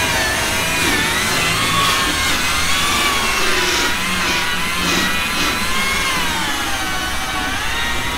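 Electric rotary polisher running with a buffing pad against a car bumper's paint, its motor whine wavering slowly up and down in pitch as it is pressed and moved over the panel.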